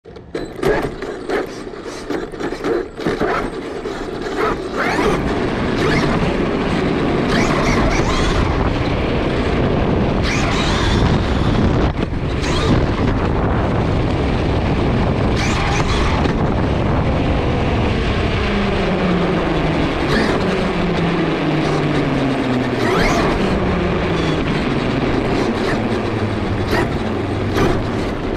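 Onboard sound of a Traxxas E-Revo 2 electric RC monster truck driving over cobblestones: a steady rumble of tyres and chassis rattle, with sharp knocks in the first few seconds as it pulls away. In the second half its motor whine falls in pitch several times as it slows.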